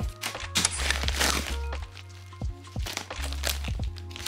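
Plastic mailer bag and paper packaging crinkling and rustling in bursts as a parcel is unpacked, over soft background music.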